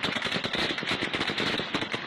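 Automatic gunfire: a continuous stream of rapid shots, many a second, with no break.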